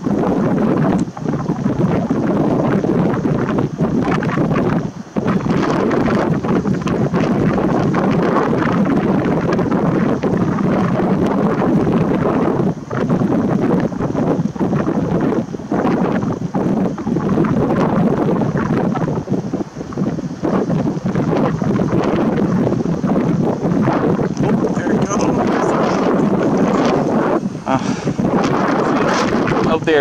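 Wind buffeting the camera's microphone: a loud, steady rush with a few brief lulls.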